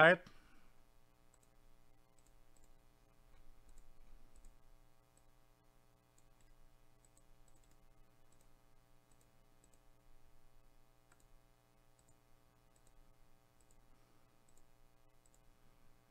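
Faint, scattered computer mouse clicks, a few each second at times, over a steady low electrical hum.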